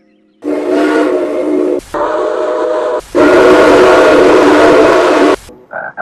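Steam locomotive whistle of Canadian National No. 3254, played back pitched down, sounding a chord with steam hiss. It blows three blasts, the first two about a second each and the last longer, over two seconds, followed by a brief toot near the end.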